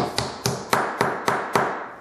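A wooden mallet tapping a glued walnut rail down onto a leg, seating a Festool Domino loose-tenon joint. There are about seven sharp taps, three to four a second, fading slightly.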